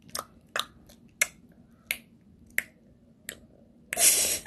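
Small child making sharp tongue clicks, six of them at an even pace, about one and a half a second.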